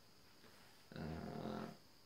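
A man's voice: one drawn-out "uh" of hesitation, low-pitched and held for nearly a second, beginning about a second in; otherwise quiet room tone.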